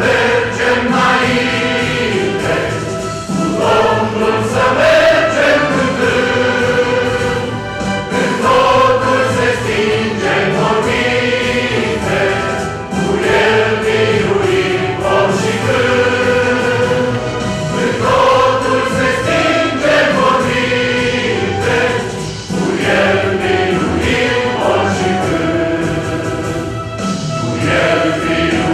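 Mixed choir of men and women singing a Christian hymn in parts, in sustained phrases with a slow-moving melody.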